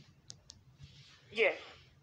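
Two short, faint clicks in quick succession, then a single brief spoken word ("yeah").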